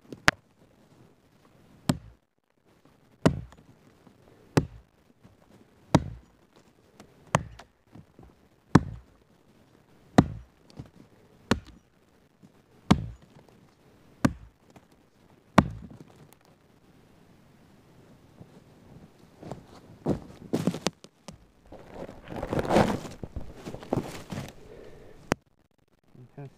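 Rinaldi Calabria axe chopping into a rotted fallen log: about a dozen steady, evenly paced strikes, roughly one every second and a half, each a dull thunk into soft wood. After the strikes stop, a stretch of rustling and crackling follows.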